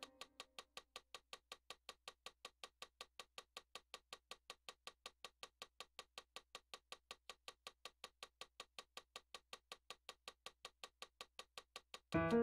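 Near silence, with a faint, evenly spaced ticking at about four to five ticks a second.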